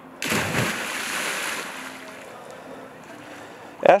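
A child jumping into a lake: one loud splash just after the start, with water washing and settling for a second or so as it dies away.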